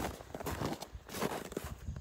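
Footsteps in snow: a run of irregular soft steps.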